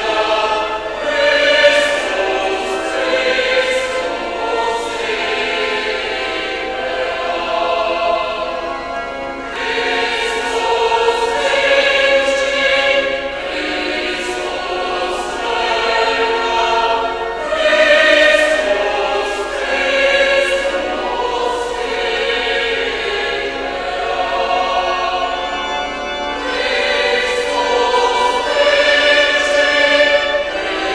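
Choir singing a sacred hymn in held, legato phrases, the words audible as regular sung consonants.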